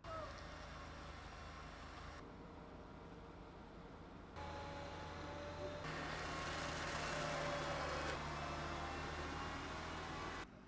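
Heavy construction machinery running: a steady low diesel engine hum with thinner whining tones above it, in stretches that change abruptly in level every couple of seconds and are loudest in the second half.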